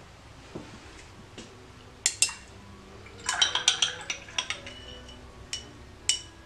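Paintbrush clinking and tapping against a hard palette dish while a watercolour wash is mixed: two sharp clinks about two seconds in, a quick run of ringing clinks a second later, and one more near the end.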